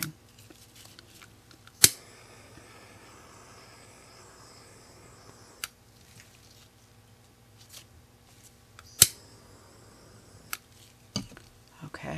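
Quiet room tone broken by a few sharp clicks, the loudest two about two seconds in and about nine seconds in, with fainter ones near the end.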